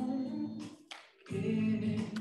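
Singing voice holding long, steady notes, breaking off briefly about a second in and then resuming.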